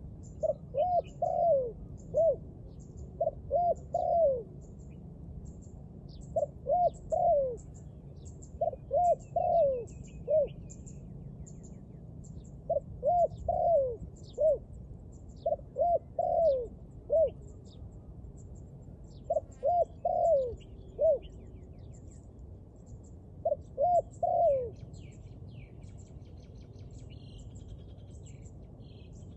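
Spotted dove cooing in short phrases of two to four coos, the last note dropping in pitch, repeated every two to three seconds. Faint high chirps sound behind it.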